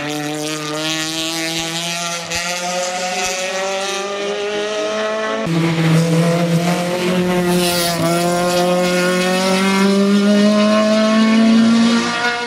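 Peugeot 306 Maxi's four-cylinder racing engine at high revs under hard acceleration, its pitch climbing steadily. The pitch drops at an upshift about halfway through and again a couple of seconds later, then climbs again as the sound grows louder.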